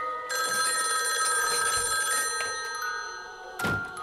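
An old-style telephone bell ringing for about two seconds, then fading. A single heavy thud near the end.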